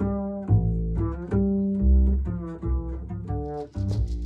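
Upright double bass played pizzicato: a line of single plucked notes, two or three a second.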